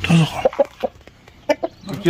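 A rooster held in hand giving short clucking calls: a few in quick succession about half a second in, and a couple more about a second and a half in.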